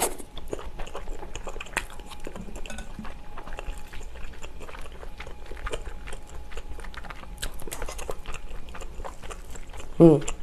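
Close-miked chewing and mouth sounds of someone eating Spam kimchi stew, with many irregular small clicks throughout.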